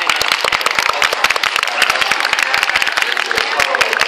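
Spectators clapping continuously, a dense run of hand claps, with crowd chatter underneath.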